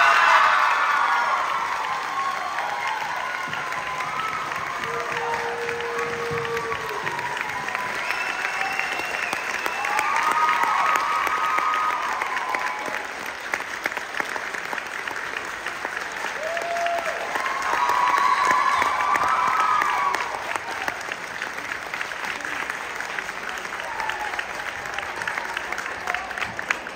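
Concert audience applauding, loudest at the start and swelling twice more, with voices and shouts rising over the clapping. It thins to scattered separate claps near the end.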